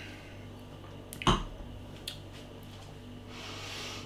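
A man's quiet mouth sounds while tasting a sip of beer: a few small lip and tongue clicks over a low steady room hum, a single thump about a second in, and a breath near the end.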